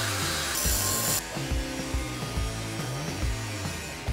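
Angle grinder cutting metal, a harsh hiss for about the first second that then stops, over background music with a steady beat.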